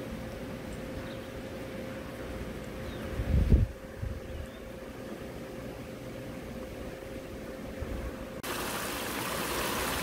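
Low steady outdoor rumble with a faint steady hum, and a brief low thump about three and a half seconds in. Near the end the sound changes suddenly to the even hiss of water splashing down a small rocky pond waterfall.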